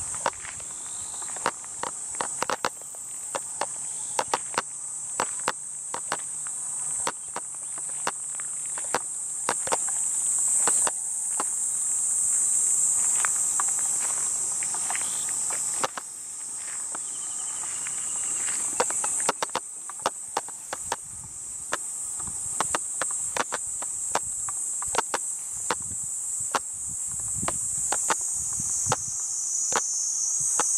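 A steady, high-pitched chorus of summer insects, with irregular footsteps of someone walking over grass and dirt.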